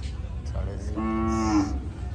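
A cow mooing once, a single call of even pitch about a second long in the middle.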